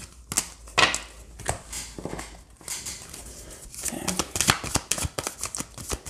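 A tarot deck being shuffled and handled: a string of short card flicks and slaps, scattered at first, then a quicker run of clicks in the second half.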